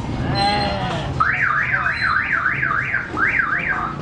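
Electronic siren-type alarm or buzzer on a motorcycle tricycle, starting about a second in and sounding a fast series of rising-and-falling pitch sweeps, about two and a half a second, for close to three seconds.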